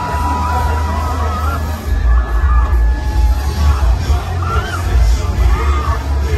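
Loud fairground music with a heavy pulsing bass beat, over crowd noise and shouts.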